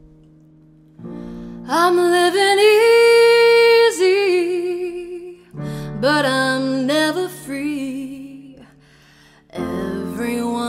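A woman singing long, wavering held notes over sustained electric piano chords. A chord is struck about a second in and another near the end.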